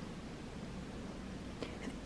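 Quiet room tone: a steady faint hiss with one small click about one and a half seconds in.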